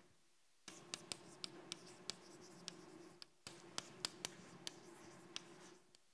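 Chalk writing on a blackboard: faint scratching broken by many sharp taps as the chalk strikes the board. It comes in two stretches, with a short pause about three seconds in.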